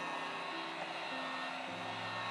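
Handheld electric heat gun running steadily, its fan blowing hot air over wet acrylic paint to bring up cells. A few steady low tones join about halfway through.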